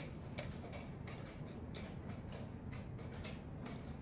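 Light, uneven ticking clicks, about three a second, over a steady low room hum.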